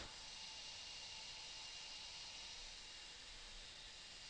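Very quiet steady hiss of room tone, with no distinct sound events.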